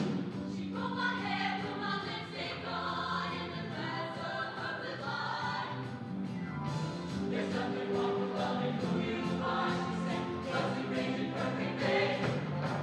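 A mixed show choir of male and female voices singing together over sustained low accompanying notes.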